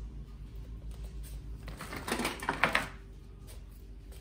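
A black audio signal cable being cut and its outer jacket stripped: a short cluster of sharp clicks and crackles between about two and three seconds in.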